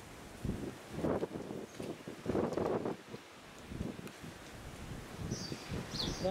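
Wind buffeting the microphone outdoors in irregular gusts, loudest about two and a half seconds in.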